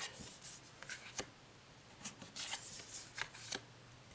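Tarot cards being dealt one onto another: faint slides and light taps of card on card, several scattered through.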